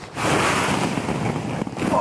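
Plastic ball-pit balls rustling and clattering together as people fall back into a deep ball pit, a dense rushing sound that starts abruptly a moment in.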